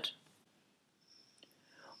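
Near silence in a pause of a woman's voice-over, with the end of a word at the start and a faint breath just before she speaks again.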